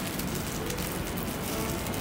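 A steady, even hiss of room background noise with faint tones underneath and no clear single event.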